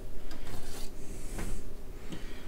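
A plug-in circuit card being slid out of the metal card cage of an HP 4261A LCR meter, its edges scraping along the card guides. There is a longer scrape about halfway through and a short click just after.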